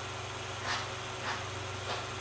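Three faint, short scrapes of a palette knife laying acrylic paint onto canvas, over a steady low hum.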